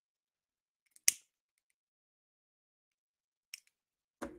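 Near silence, broken by one short, sharp click about a second in and a much fainter tick near the end.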